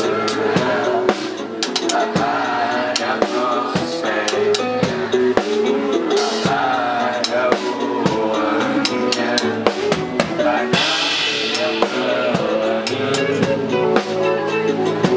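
Live band playing with a prominent drum kit (kick drum, snare and cymbals keeping a steady beat) under electric guitar and keyboard.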